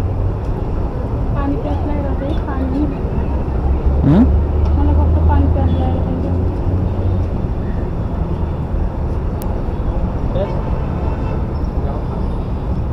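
Motorcycle engine idling with a steady low hum, with faint voices in the background and a brief rising tone about four seconds in.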